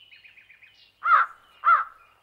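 A crow cawing twice, about half a second apart, with faint high chirping of small birds before the caws.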